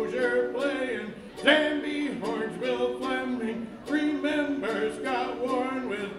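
A man singing a list of names in a melodic chant, in phrases with short breaths between them, with a mandolin accompanying.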